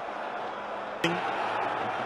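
Steady background noise of a stadium football broadcast in a gap in the commentary, with one sharp click about halfway through.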